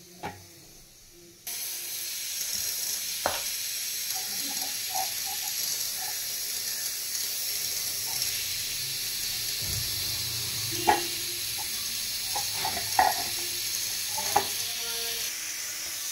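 A steady high hiss that starts abruptly about a second and a half in, with a few light clicks and knocks from food being handled on a steel plate.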